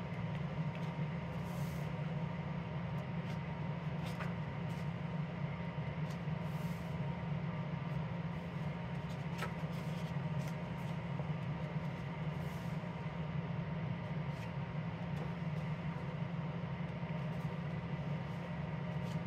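Steady low hum in the room throughout, with a few soft paper rustles as coloring book pages are turned.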